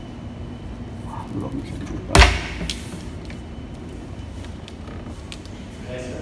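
Locker door with an electronic lock being pulled open: one sharp, loud clunk about two seconds in, followed by a lighter click, over a steady room hum.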